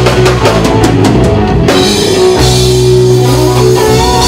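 A live rock band playing without vocals: electric guitar, electric bass, a Sonor drum kit and a Yamaha keyboard. A quick run of drum strokes fills the first second and a half, then a low bass note is held.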